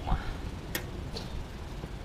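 One sharp click just under a second in, over a steady low rumble of wind on the microphone.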